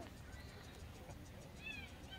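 A short, faint, high-pitched animal cry near the end, a single meow-like arched call.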